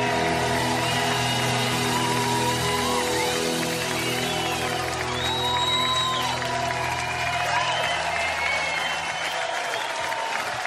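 A live band holding a final sustained chord that dies away about eight seconds in, under an audience applauding and whistling.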